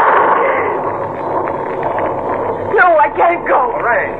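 Radio-drama storm sound effect of wind and rain, coming in suddenly and loud as a door is opened onto the storm and then running on steadily. Voices come in over it near the end.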